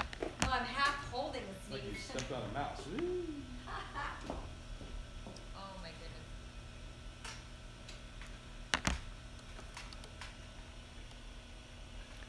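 Faint, indistinct voices over a steady low room hum, then a few light clicks, the sharpest about nine seconds in.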